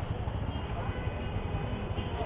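Motor scooter engine idling: a steady low rumble with a fast, even pulse.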